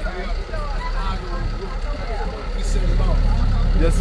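Engine of an open safari truck running with a steady low rumble that grows louder about two and a half seconds in as the vehicle gets under way. Passengers laugh and chatter over it.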